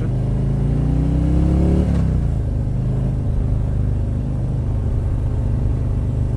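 Milwaukee-Eight 107 V-twin of a Harley-Davidson Street Glide accelerating under throttle from the rider's seat. The revs climb for about two seconds, then drop back, and the engine runs on steadily.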